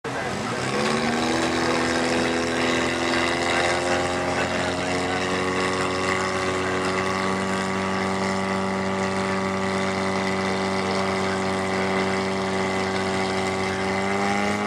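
Vehicle engine revving up over the first second or so, then held at steady raised revs.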